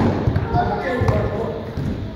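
Soccer ball thudding off a player's foot as it is juggled and kicked, a few dull knocks, the loudest right at the start, with people's voices in the background.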